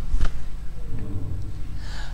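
A sharp intake of breath into the microphone just after the start, then a faint low voice about halfway through, over a steady low hum.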